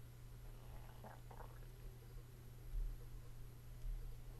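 Faint room tone: a steady low electrical hum under light hiss, with a couple of soft low bumps near the end.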